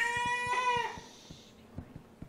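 A single high, drawn-out wail lasting about a second, its pitch rising slightly and then falling away, followed by a few faint clicks.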